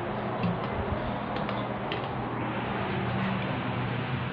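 Inside a Hitachi Urban Ace elevator car: a steady low mechanical hum, with a few short clicks in the first two seconds as a floor button is pressed.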